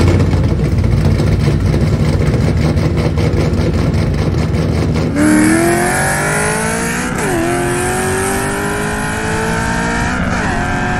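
Modified 4.6-litre three-valve V8 of a 2007 Ford Mustang GT, stroked to 4.9 litres, with aggressive high-lift cams and a full exhaust system. It first idles loudly with a rapid pulsing beat. About five seconds in it accelerates hard, heard from inside the cabin, its pitch climbing, then dropping at an upshift about two seconds later and climbing again.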